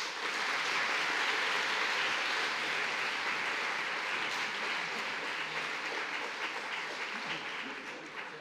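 Lecture-hall audience applauding: dense, steady applause that slowly thins out toward the end.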